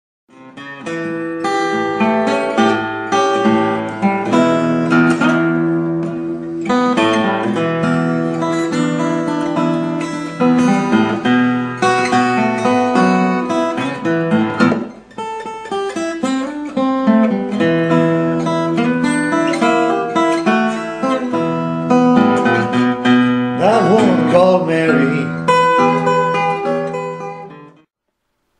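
Acoustic guitar playing a fingerpicked blues in E, moving through A7 back to E. The playing runs on with a brief dip about fifteen seconds in.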